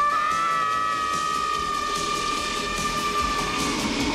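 Two children screaming together in one long, high, held scream that starts sharply and dies away near the end, over a steady noisy rush.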